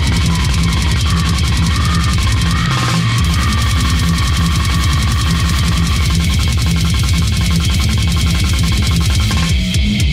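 Brutal death metal / grindcore track: fast blast-beat drumming under raspy, heavily distorted guitars and bass, loud and unbroken.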